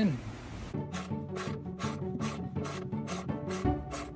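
A threaded steel nut insert being screwed into MDF with a hand-held driver: a short rasping scrape with each turn as its outer threads cut into the board, about four a second.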